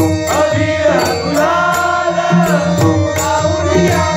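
A male singer sings a Marathi abhang: one long, drawn-out phrase with sliding pitch, over the steady drone of a harmonium. Pakhawaj drum strokes drop back during the held phrase and come in again near the end.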